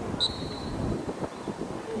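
Football referee's whistle: one short blast just after the start, over wind rumbling on the microphone.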